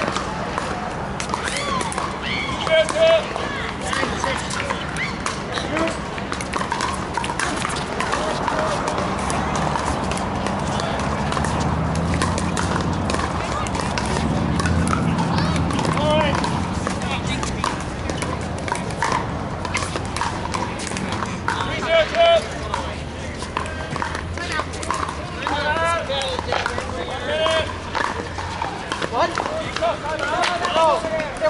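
Pickleball paddles hitting a hollow plastic ball: sharp pops that come in rallies, from this court and neighbouring ones, with scattered voices calling out and a steady low hum underneath.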